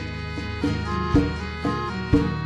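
Arbëresh folk music: a band playing a dance tune with a steady beat of about two strokes a second under sustained melody notes.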